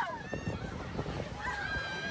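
Ride cars rattling and rumbling along the track, then a rider's high, steady held scream starting about a second and a half in.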